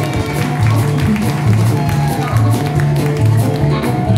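Live acoustic blues band playing: loud repeated upright bass notes under acoustic guitar strumming, with harmonica over the top.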